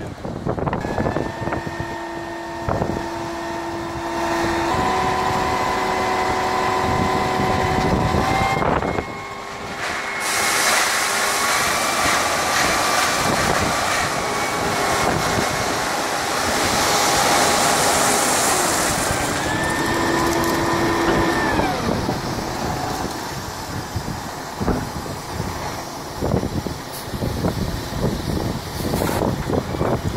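Dump-trailer truck's engine running at raised revs to work the hydraulic hoist as the bed tips, its steady tones shifting in pitch a few times and dropping back about twenty seconds in. From about ten seconds in, a load of crushed gravel rushes and slides out of the tailgate.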